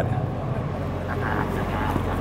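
Steady low background hum between spoken phrases, with a faint voice partway through.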